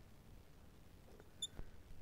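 Faint scratching of a marker writing on a glass lightboard, with one short, high squeak about one and a half seconds in.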